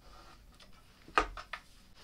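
Handling noise, then a sharp knock about a second in and a lighter one just after, as the white-painted crib side panel is shifted and set down.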